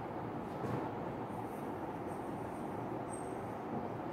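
Marker pen writing on a whiteboard, giving short, faint, high-pitched squeaks with the strokes from about a second in. Under them is a steady background noise.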